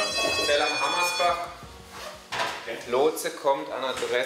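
A steady, buzzy electronic alarm tone, the station's mission alert, sounds under a man's voice and cuts off about a second and a half in; speech follows.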